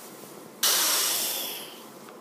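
A mouth-made "pssshh" hiss sound effect, standing in for the chamber hissing open after the switch is pulled. It starts sharply about half a second in and fades away over the next second and a half.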